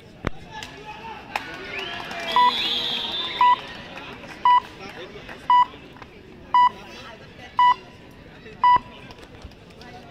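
An electronic beeper sounding seven short, identical beeps, about one a second. These are the loudest sounds, over a constant background of crowd voices.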